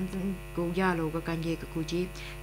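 Steady low electrical mains hum running under a newsreader's voice reading the bulletin in the Khiamniungan dialect.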